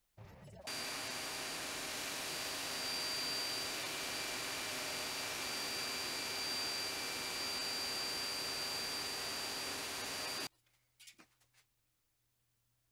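Benchtop drill press boring into a board with a vacuum dust-extraction hose drawing air at the bit: a steady rushing hum with a thin high whine, starting about half a second in and cutting off suddenly near the end.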